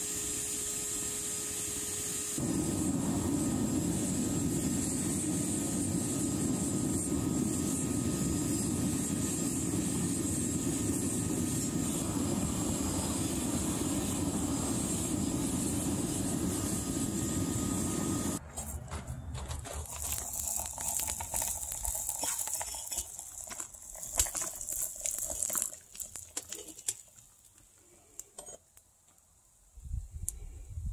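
Smelting furnace firing a crucible of copper matte and flux: a steady hissing rush that grows louder and deeper about two seconds in, then stops abruptly a little past halfway. Scattered crackles and ticks follow.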